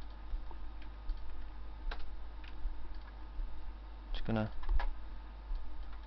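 Scattered single clicks of a computer mouse and keyboard over a steady low electrical hum, with a brief vocal sound about four seconds in.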